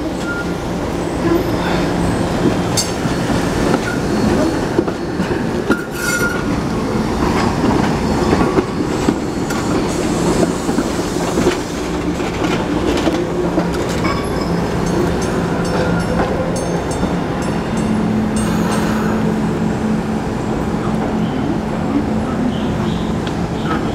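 SEPTA Kawasaki light-rail trolley rolling slowly out of a tunnel portal and past on curved street track, its wheels clicking over the rail joints, with a steady low hum and several brief wheel squeals on the curve.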